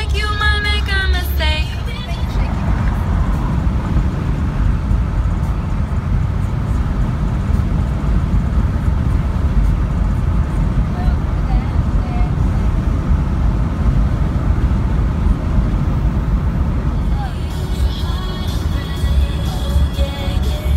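Steady low road rumble inside a moving car's cabin at highway speed. A song with vocals plays at the start and fades after about two seconds, and music comes back near the end.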